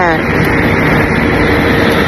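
A voice trails off with a falling pitch at the start, leaving a steady rushing background noise with a faint hum under it.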